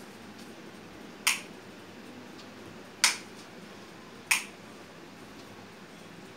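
Three sharp clicks, about a second and a half apart, over quiet room noise.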